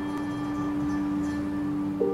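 Background music: a sustained chord of steady held tones.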